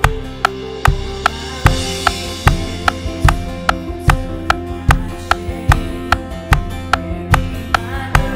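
Live band music with a drum kit: a kick drum on every other beat and an even, sharp click on every beat, about two and a half a second, over sustained keyboard and bass notes.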